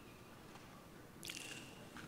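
Near silence: quiet room tone, broken a little past halfway by one brief, faint noise close to a handheld microphone.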